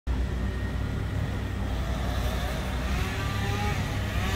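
Engines of the bucket trucks and tree-crew equipment running steadily: an even, low rumble that holds at one level.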